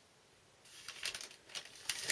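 Faint handling noise: light rustling and scattered small clicks as a hand puppet and a toy tractor are moved about on a paper-covered table, starting after about half a second of near silence.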